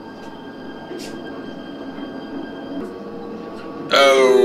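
Steady low rumble with a few faint knocks from a TV drama's soundtrack, the ambience of a dark train compartment.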